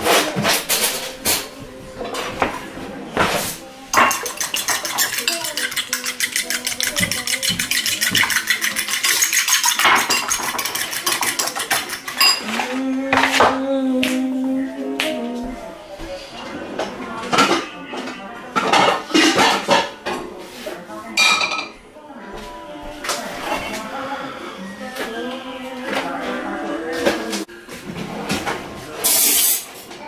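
Metal fork beating eggs and milk in a ceramic bowl: a fast, even run of clinks for about the first ten seconds, then scattered knocks and clatter of kitchenware.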